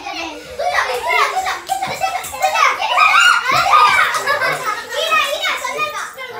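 Several children talking and calling out over one another as they play.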